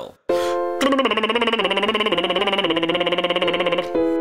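A short piano note, then a low male bass voice doing a lip trill: the lips flutter over a sung tone that steps downward in pitch in a descending intervallic pattern.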